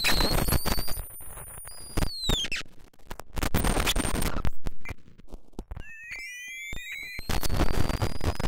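Chaotic electronic sound from a homemade circuit reanimating a dead Neotek circuit board through fishing-weight contacts: bursts of harsh crackling noise cut in and out suddenly. High whistling tones glide down about two seconds in, and near the end several tones glide upward over a warbling tone.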